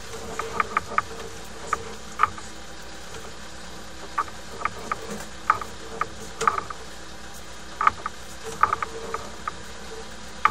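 Sewer inspection camera being pulled back through the pipe on its push cable: a steady hum with scattered light clicks and ticks, some coming in quick little clusters.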